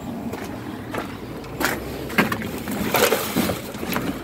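Scattered knocks and scrapes of a gloved hand rummaging through plastic and cardboard in a box, over a steady outdoor background noise. The knocks come in the second half.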